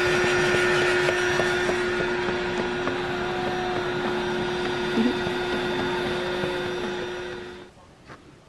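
Electric air pump inflating an air mattress, running with a steady hum, cutting off near the end.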